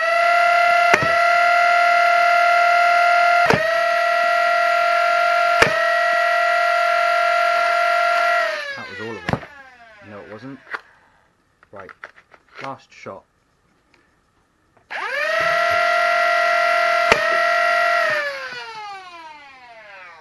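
Fully automatic 3D-printed Lepus Mk1 Nerf blaster's motor spinning up to a steady high whine, with a few sharp clicks, then winding down in falling pitch after about eight and a half seconds. A few seconds later it runs again for about three seconds with one click and winds down.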